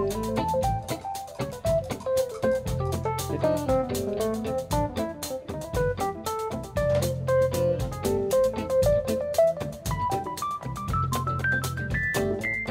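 Live rock band jamming instrumentally: an electric guitar plays a fast run of single notes over drums, hand percussion, bass and keyboards. The lead line climbs higher in pitch near the end.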